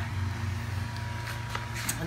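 A steady low background hum, like a motor running, with a couple of faint clicks.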